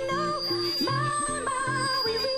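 Hardcore dance music from a DJ mix: a high, wavering vocal melody over short, repeating synth bass notes.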